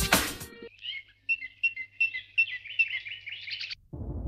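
Background music cuts off about half a second in, followed by birds chirping in a quick run of short, high calls that stops just before the end.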